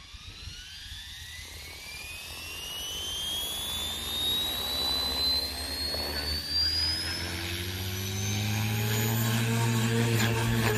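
Align T-Rex 470 electric RC helicopter spooling up on the ground: the motor's whine climbs steadily in pitch, and the low hum of the rotor builds and grows louder in the second half.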